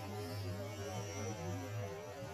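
A steady low hum, with faint wavering tones above it.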